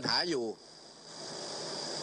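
A man speaking into a podium microphone stops about half a second in, leaving a pause filled with a steady high-pitched buzz and a faint hiss that grows a little louder toward the end.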